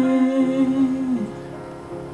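A male singer holds a long sung note over backing music. The note ends a little past halfway with a slight drop in pitch, and the quieter music carries on.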